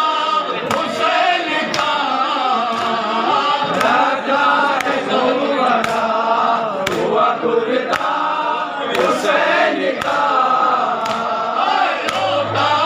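A group of men chanting a Shia mourning noha in chorus, one melodic line sung together. Sharp strikes land about once a second in time with the chant, typical of matam (hands beaten on the chest).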